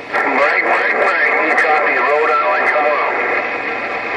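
A weak, garbled voice of a long-distance station coming through a President HR2510 transceiver's speaker on 27.085 MHz. It is buried in static, with steady whistling tones over it.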